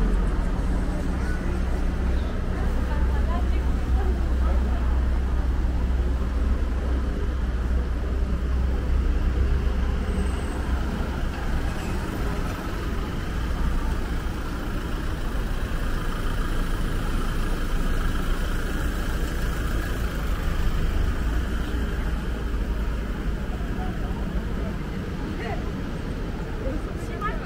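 Busy city street: a steady low rumble of road traffic and vehicle engines, heaviest in about the first half, with passers-by talking.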